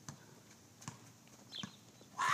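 Three faint, sharp knocks or taps, irregularly spaced about a second apart, over a quiet outdoor background.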